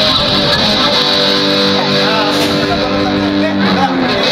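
Live band's electric guitar playing held chords through the PA, loud and sustained, changing chord about half a second in and stopping just before the end.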